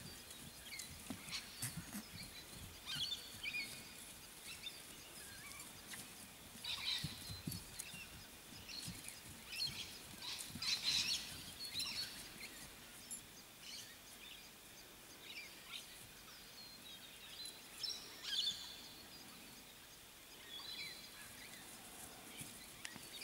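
Wild birds calling and chirping on and off over quiet outdoor ambience, with a few soft low thumps.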